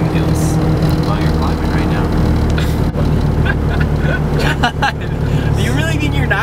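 Diesel engine of an older vehicle running steadily under load as it climbs a highway grade, heard from inside the cab with road noise. Voices talk briefly near the end.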